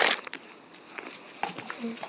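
A short rustle at the start, then quiet with a few light ticks, and a brief hummed "mm" from a person near the end.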